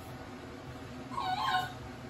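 Eight-week-old border collie puppy giving a short, high whimper about a second in.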